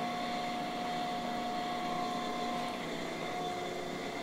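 Camshaft grinder running steadily, its motors and spinning grinding wheel giving an even hum with a steady whine, while the machine is set over to the next main journal of a Viper V10 camshaft.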